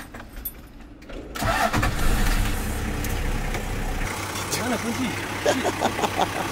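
Toyota Land Cruiser 60 engine starting about a second and a half in, then idling steadily.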